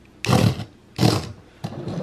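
Small HexBug Fire Ant robot's electric drive motor whirring in two short bursts about a second apart as the remote's buttons are pressed, the toy jittering on the tabletop.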